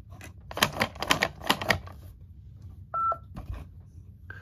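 A quick run of sharp plastic clicks as the buttons on a Fisher-Price Linkimals beaver toy are pressed. Then, about three seconds in, the toy gives one short, high electronic beep.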